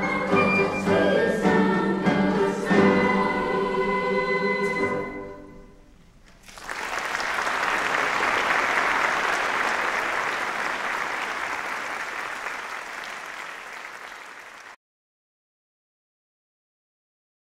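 A youth choir singing, fading away about five seconds in. Then applause starts, slowly dies down and cuts off suddenly near the end.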